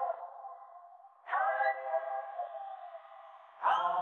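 Female pop singers' isolated live vocals holding wordless notes: one note fades out, a new held note starts suddenly about a second in and fades, and another starts near the end, each with a reverberant tail.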